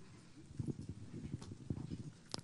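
Faint, irregular low knocks and rustles of a handheld microphone being handled as it is passed from one speaker to the next.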